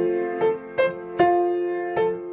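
Piano playing a held F major chord in the left hand while the right hand picks out the single notes of a rising F–A–C–F line, four notes struck in just under two seconds.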